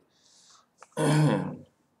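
A man clears his throat once, about a second in, after a faint short hiss.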